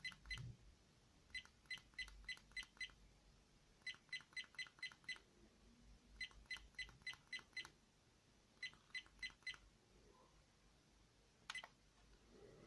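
SJCAM SJ5000X Elite action camera's keypad tone: short, quiet electronic beeps, one per button press as the setup menu is scrolled, in quick runs of five to seven at about five a second with pauses between runs.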